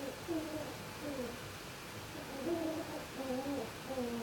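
Poultry giving soft, low, short calls, several falling in pitch, with a few overlapping notes and the loudest ones about halfway through.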